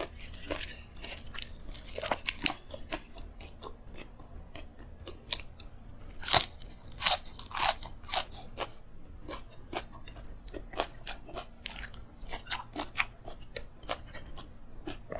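Close-miked chewing and crunching of food in a mouth, a quick irregular run of crisp crunches that is loudest about six to eight seconds in.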